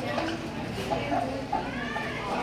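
Indistinct chatter of several voices, with a short high-pitched call that curves up and down in the second half.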